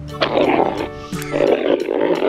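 Dinosaur roar sound effect, heard in two rough stretches, over background music.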